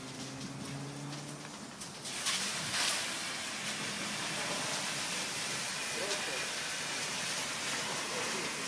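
Steady rain-like hiss of water spraying from a fire hose, starting suddenly about two seconds in.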